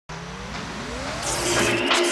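Swelling synthesized whoosh with several tones gliding upward, getting steadily louder: a riser sound effect opening a TV programme's title sequence.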